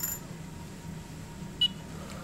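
A single short, high-pitched ping about a second and a half in, over a faint steady low hum.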